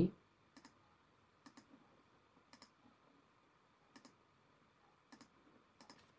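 Faint computer mouse clicks, about half a dozen spaced a second or so apart, many as a quick double tick.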